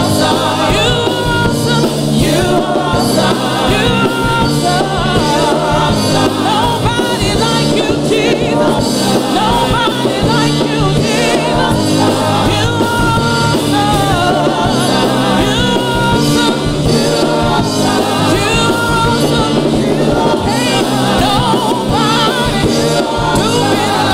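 Gospel praise team of several singers performing a song with a live band of drum kit and electric guitar, the voices carrying over a steady drum beat.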